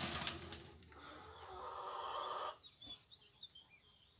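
Birds in a wire aviary: a few sharp flutters at the start, a drawn-out call lasting about a second near the middle, then faint, short high chirps.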